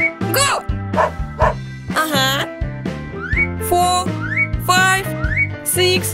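Bright children's cartoon music with cartoon animal calls over it, a dog barking among them. The calls are short and pitched, coming about once a second.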